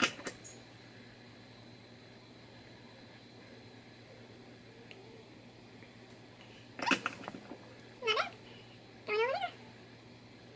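A cat meowing twice near the end, short high-pitched mews that slide down in pitch and then hook upward. Just before them there is a brief clatter of small clicks and knocks.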